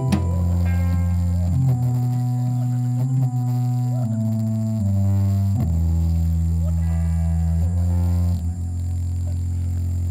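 Live rock band playing the instrumental close of a song: long held chords on electric guitar and keyboard over a strong bass line, changing every second or so, with little drumming.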